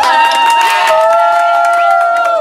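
A group of people singing together unaccompanied, with hand clapping and cheering; several voices hold one long note through the second half.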